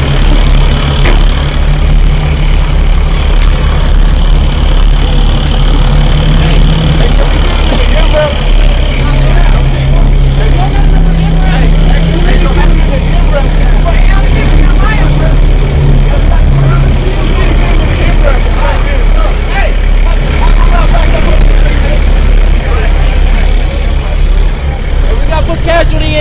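Heavy vehicle engine running at idle with a deep, steady rumble, its note shifting up and down a little, under indistinct voices.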